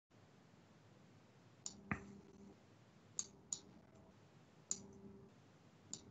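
Near silence broken by about six faint, sharp clicks, spaced irregularly, some in close pairs.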